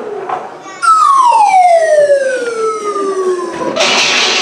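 Slide whistle played in one long, smooth downward glide lasting nearly three seconds, starting about a second in.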